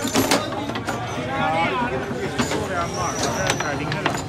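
Foosball being played: sharp clacks of the ball and plastic players striking, the loudest just after the start and a few more later, with people's voices around the table.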